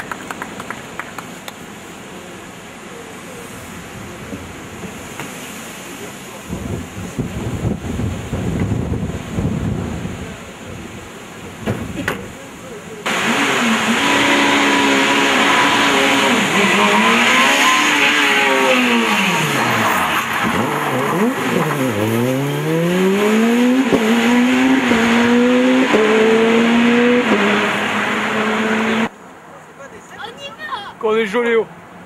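Peugeot 207 rally car engine revving hard and accelerating: its pitch drops and swoops back up twice, then climbs in steps through the gears. It starts suddenly about halfway through and cuts off just before the end, after a stretch of outdoor crowd noise with voices.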